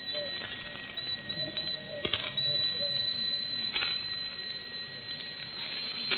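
A pause in an old 1960s live recitation recording: low tape hiss with a steady high-pitched whine and a few faint clicks.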